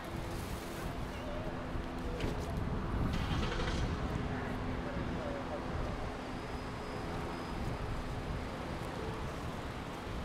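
Steady low hum of an idling vehicle, with faint indistinct voices.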